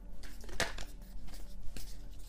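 Tarot cards being handled and shuffled: soft rustling with a few sharp clicks, the strongest about half a second in.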